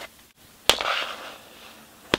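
A plastic CD jewel case is set down with a sharp click and slid across the tabletop. A short scraping rustle follows and fades over about a second.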